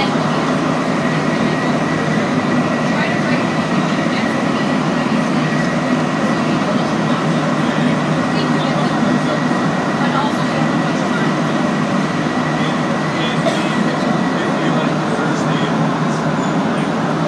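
Cabin noise of a Montreal Metro Azur rubber-tyred train running through a tunnel: a steady loud rumble with a thin, even high whine over it that fades out near the end.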